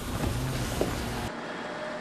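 Background noise of a crowd of reporters pressing around a building's revolving-door entrance, with a faint voice in it. About a second in, it cuts suddenly to a quieter outdoor background with a faint steady hum.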